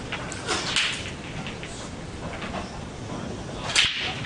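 Break-off shot in English eight-ball pool: near the end, one sharp, loud crack as the cue ball smashes into the racked reds and yellows and sends them scattering.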